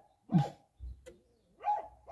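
A dog barking a few times in short, separate barks, heard from inside a car.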